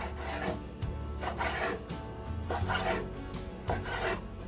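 A Chinese cleaver cutting a squid body on a wooden cutting board. There are about four strokes of the blade drawn through the flesh and across the board, each about half a second long and roughly a second apart.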